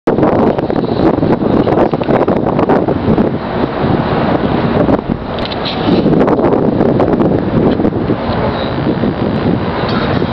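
Wind buffeting a camcorder's microphone: loud, gusty noise, heaviest in the low end, rising and falling, with a brief drop about five seconds in.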